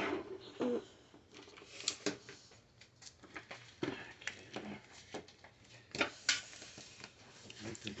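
Scattered light clicks and taps of small toy parts and a glue gun being handled and set down on a tabletop, with a few faint bits of voice.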